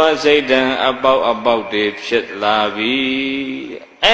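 A Buddhist monk's voice chanting into a microphone in a slow, melodic intonation, ending on a long held note that fades out just before the end.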